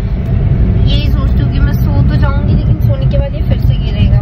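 Steady low road and engine rumble inside a moving car's cabin at highway speed, with a voice speaking briefly over it.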